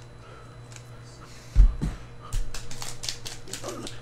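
A dull thump about a second and a half in, then quick crinkling and crackling of a foil Panini Mosaic football card pack wrapper being handled and torn open.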